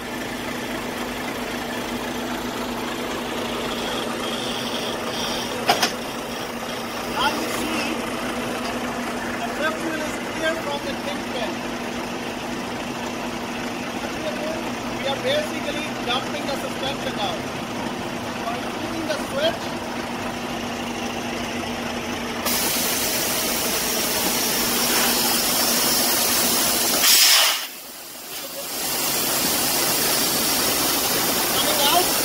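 Volvo semi-truck's diesel engine idling steadily. About two-thirds of the way through, a loud, even hiss of air starts suddenly as the air-ride suspension is let down to drop the fifth wheel clear of the trailer, with a brief sharp burst a few seconds before the end.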